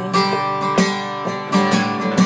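Acoustic guitar strummed, several strokes over chords that ring on between them.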